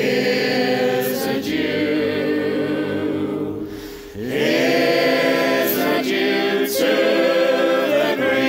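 Unaccompanied choir of men's and women's voices singing a folk song in harmony: long held chords in two phrases, with a brief breath between them about halfway through.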